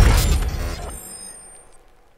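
The end of a logo sting's music and sound effects: a loud low hit at the start, breaking off about a second in, with high ringing tones that fade away soon after.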